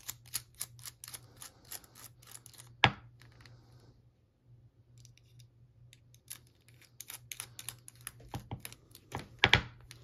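Quick small clicks and ticks of a precision screwdriver turning a Torx screw in the side of a padlock, with a pause in the middle and two sharper knocks, one about three seconds in and one near the end.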